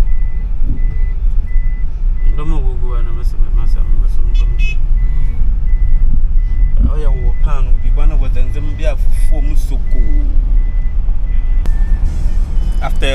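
Engine and road rumble heard from inside a moving van's cabin. A short, high electronic beep repeats evenly about twice a second, the kind of warning chime a vehicle gives, and stops near the end. Indistinct voices come in twice.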